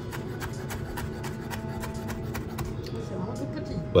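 Chef's knife dicing tomato into small cubes on a wooden cutting board: quick, uneven knife taps against the board, several a second.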